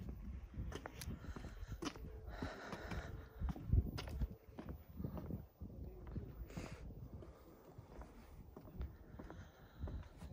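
Footsteps on wooden dock boards: irregular soft knocks and clicks, with a low rumble on the microphone and a few short hissy noises.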